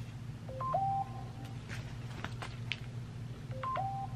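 A short electronic tone figure, a low beep, a higher beep, then a held middle note, sounds twice about three seconds apart, with a few faint clicks in between.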